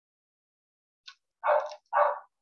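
A dog barking twice in quick succession near the end, preceded by a faint short high-pitched sound.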